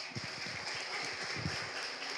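Small audience clapping in welcome: a dense patter of hand claps that dies away as the next speaker begins.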